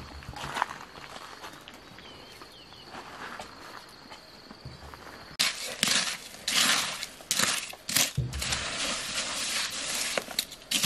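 A hand trowel scraping and digging into damp earth in a run of rough, irregular strokes, starting about halfway in. Before that there is quiet outdoor background with a faint steady high whine.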